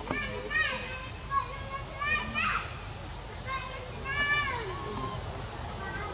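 Infant long-tailed macaque giving a rapid series of short, high-pitched calls, each rising and then falling in pitch, typical of a distressed baby monkey crying.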